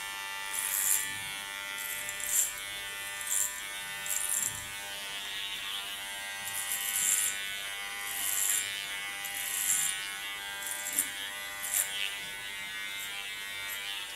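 Cordless electric hair clipper with a clipper comb running with a steady buzz. Short crisp hisses come roughly once a second as it is pushed up through the short hair at the side of the head.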